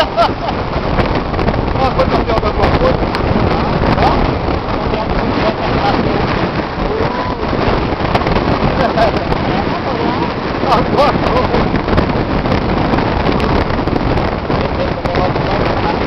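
Wind buffeting the microphone in a loud, steady rush, with indistinct voices of people talking under it.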